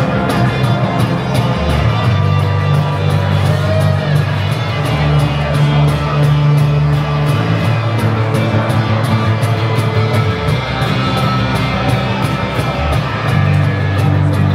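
A live acoustic trio playing rock: strummed acoustic guitar and electric bass guitar over a steady beat slapped on a cajon box drum.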